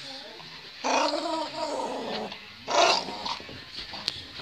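Small dog growling in play while tugging at a stick held in a person's hand, a wavering growl lasting over a second, followed by a louder, short burst about three seconds in.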